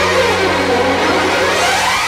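Instrumental passage of a 1980s Bollywood film song: a sweep of many notes that falls and then rises back, over a held low note.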